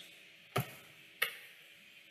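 Two short, sharp clicks about 0.7 s apart over faint room tone.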